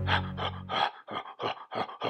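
A man panting in quick, short breaths, about four a second. Music underneath ends about a third of the way in.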